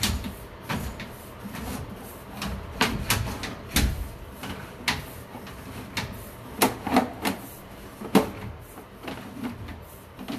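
Sewer inspection camera being pushed down a drain line through a plumbing stack: irregular sharp clicks and knocks, about a dozen, as the push cable and camera head are fed into the pipe.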